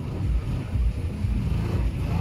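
Street traffic: vehicle engines and road noise with an uneven low rumble.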